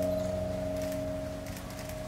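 Slow piano music paused between phrases: one held note fades away slowly.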